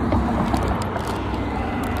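A car passing, its road noise a steady rush that holds level.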